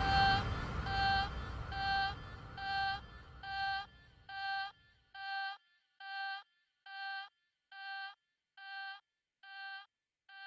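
Electronic dance track thinning out: a low synth rumble fades and stops about halfway through, leaving one repeated synth note. The note pulses a little more than once a second, each pulse short and clean with a gap after it, at a steady low volume.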